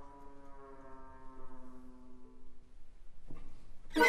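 Symphony orchestra holding a soft, sustained brass chord that slowly thins and dies away, leaving a short hush near the end.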